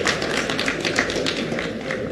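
An audience applauding, with single hand claps standing out irregularly. The applause thins out near the end.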